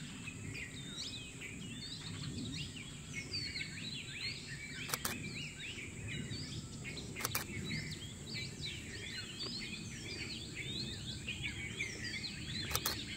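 Many wild birds chirping and calling all through, over a steady high-pitched buzz and a low rumble. Two sharp clicks, the first about five seconds in and the second a couple of seconds later.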